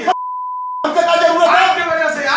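A censor bleep: one steady high beep lasting about three-quarters of a second, with the surrounding audio cut out, masking what is presumably abusive language. Men's speech resumes right after it.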